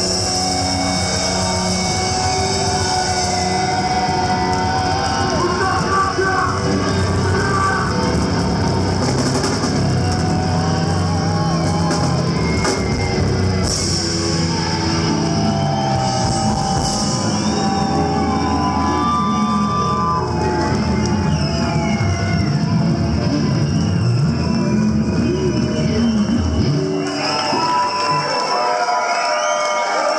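A rock band playing live at full volume, with electric guitars, bass guitar and drum kit. Near the end the bass and drums drop out, leaving the higher guitar parts sounding on their own.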